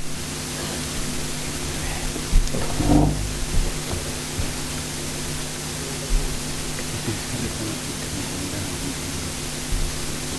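Steady electrical hiss with a low mains hum from the recording or sound system. It switches on abruptly and runs on evenly, with a faint knock or two.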